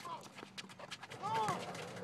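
Faint voices of people calling out at a distance, with a few light taps scattered through.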